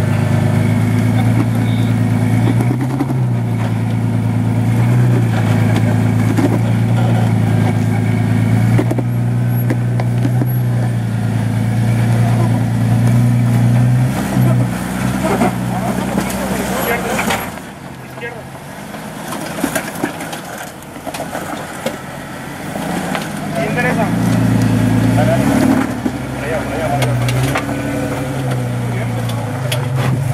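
Jeep Cherokee XJ engine working under load at low revs as it crawls up a rock ledge, the throttle rising and falling in steps. A little past halfway it drops back for several seconds, then picks up again.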